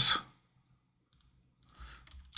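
A few faint clicks of a computer mouse, a pair about a second in and more near the end, over near silence.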